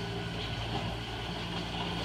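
Steady low hum of a motor running.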